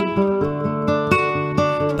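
Instrumental song accompaniment: an acoustic guitar strumming chords, with fresh strikes every few tenths of a second.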